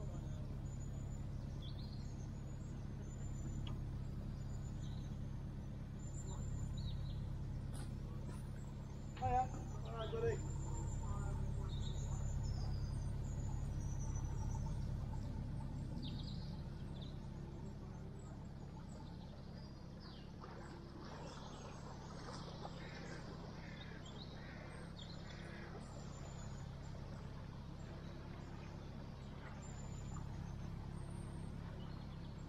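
Narrowboat engine running at low revs, a steady low hum that eases off about two-thirds of the way through, with small birds chirping high above it. Two short, louder sounds stand out about a third of the way in.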